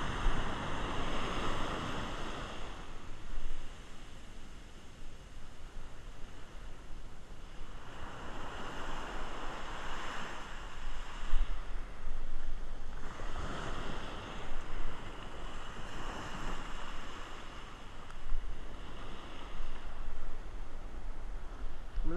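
Ocean surf breaking and washing up the beach close by, swelling and ebbing every few seconds as each wave comes in. Wind buffets the microphone underneath with a low rumble.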